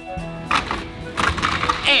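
Background music with steady held tones, and the clatter of juggling rings being handled and knocked together about half a second in and again near the end.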